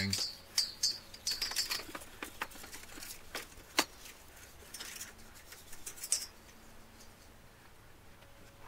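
A steel clock mainspring being scrubbed by hand with an abrasive scrub pad soaked in WD-40: scratchy rubbing with scattered light clicks, and one sharper click near the middle. It grows quieter toward the end.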